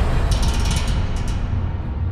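Low rumble of an edited-in dramatic sound effect, slowly fading after a hit, with a few scattered clicks in the first second.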